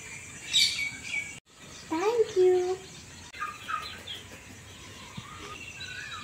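Birds chirping with short, high tweets, and a brief burst of a voice about two seconds in.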